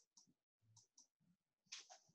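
Near silence, broken by a few faint clicks and a brief soft rustle near the end.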